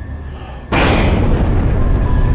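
A low drone, then about two-thirds of a second in a sudden loud, deep rumble sets in and holds steady.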